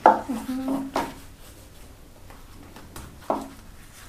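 A metal spoon tapping and scraping in a baking tin while spreading poppy-seed filling: a sharp tap at the start, another about a second in, and one more near the end.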